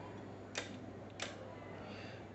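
Two sharp clicks of front-panel keys being pressed on a Kikusui TOS3200 leakage current tester, about two-thirds of a second apart, over a steady low hum.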